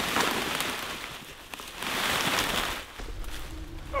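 Footsteps crunching and rustling through thick dry leaf litter, in two swells with a few small clicks.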